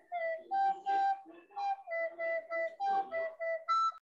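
A flute-like wind instrument playing a simple tune of about a dozen short, separate notes that step between a few pitches.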